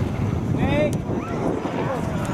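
Wind buffeting the camera microphone with a steady low rumble, while distant voices shout short calls across the field, about half a second and a second and a half in.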